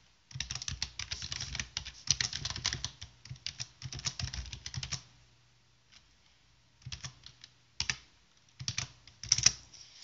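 Typing on a computer keyboard: a fast run of keystrokes for about five seconds, then a pause and a few scattered keystrokes near the end.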